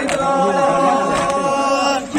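A group of men's voices chanting a Kashmiri noha, a Shia mourning lament, in unison, holding one long steady note.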